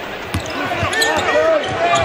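Basketball dribbled on a hardwood court during live play in an arena, with voices and short squeaks around it.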